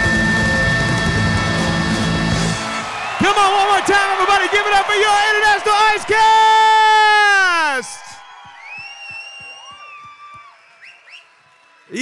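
Loud show music cuts off about two and a half seconds in. A man's voice through the PA then shouts a long drawn-out call, its last held note falling away near the eight-second mark. After that come faint scattered audience claps and whoops.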